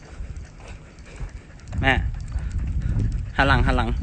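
Low rumbling noise on a phone microphone, with a voice calling out briefly about two seconds in and again, louder and longer, near the end.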